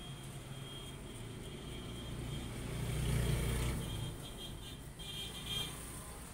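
A low engine hum that swells to a peak about three seconds in and then fades, as of a motor vehicle going by.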